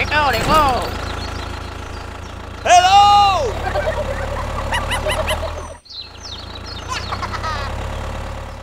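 A steady low engine rumble for a small tractor, with high-pitched cartoon-style voices squealing over it. The loudest is one long squeal that rises and falls about three seconds in. The sound cuts out for a moment about two-thirds of the way through.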